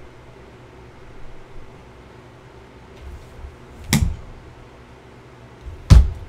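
Two short thumps about two seconds apart, the second louder, against quiet room tone.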